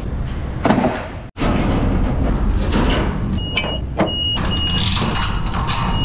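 Genie boom lift driving up a metal loading ramp into a curtainside trailer: steady machine running noise with knocks and rattles, and a high beeping in the second half.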